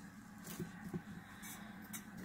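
Faint handling sounds of tulle mesh: a soft rustle with a few light taps as the puffs are pressed onto a board.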